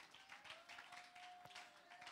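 Near silence in a church hall, with a faint held tone and a few faint scattered claps.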